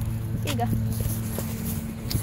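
A steady low hum runs under a short spoken phrase and stops just after the end, with a few faint knocks from a phone being handled as it is passed over.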